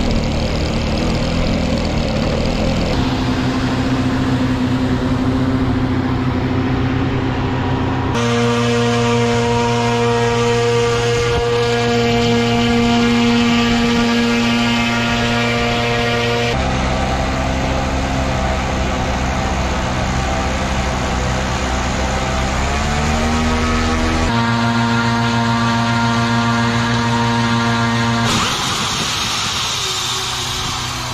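ScanEagle drone's small propeller engine running steadily at high speed on its catapult launcher, its pitch rising briefly about three-quarters of the way through. Near the end the drone is catapulted off with a rush of noise, and its engine note falls away as it flies off.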